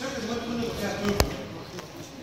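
A man talking in a lecture room, with one sharp knock a little over a second in, louder than the voice.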